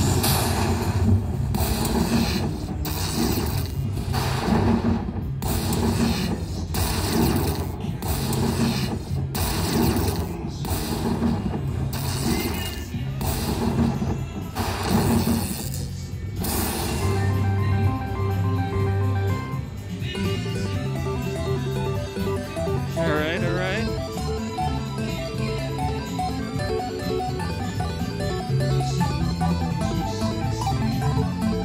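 Aristocrat Dollar Storm slot machine playing its bonus-win celebration music. For the first half a steady beat of crashing hits comes roughly every three-quarters of a second; then a melodic tune takes over while the win meter counts up the bonus prizes.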